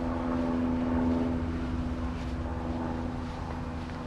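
A steady mechanical drone of constant pitch, like a distant engine running.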